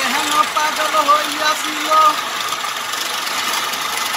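Wood lathe running steadily while a hand chisel cuts grooves into a spinning wooden spindle. A voice is heard over it in the first two seconds.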